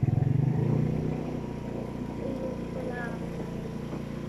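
Small motorcycle's engine running as it is ridden, a low rumble that eases off about a second in.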